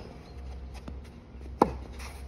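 A tennis ball struck by a Wilson Blade racket strung with two extra main and two extra cross strings: one sharp pock about one and a half seconds in, with a short ringing tail that falls in pitch.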